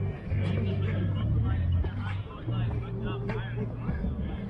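Busy city-park ambience: voices of people talking nearby, no words clear, over a loud low hum that holds in long stretches of about a second.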